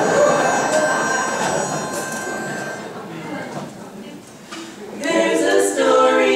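Audience laughing, with a steady pitch-pipe note under the laughter for the first few seconds. The laughter dies away, and about five seconds in a women's barbershop quartet starts singing a cappella.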